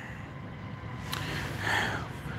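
Steady low outdoor rumble with no words, with a single sharp click about a second in and a brief soft hiss near the end.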